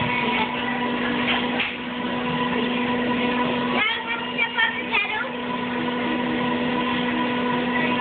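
Steady rushing hum of the air blower at a toy-bear bath station, its low tone cutting out about four seconds in while the rush of air carries on; brief voices around the middle.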